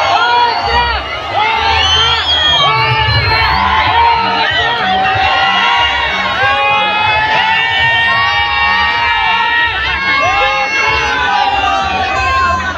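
A large crowd shouting and singing together in many overlapping voices, some notes held, over a low steady beat about three times a second.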